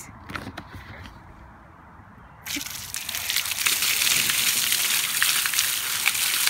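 A few light knocks from the bucket, then about two and a half seconds in a large bucket of water is tipped out, gushing and splashing over a person's head and onto the concrete steps, getting louder over the next second and running on steadily.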